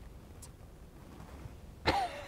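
Quiet room tone, then near the end one sudden loud cough from a man.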